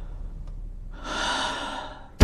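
A man takes one audible breath through the mouth, lasting just under a second and starting about a second in, over a faint low hum.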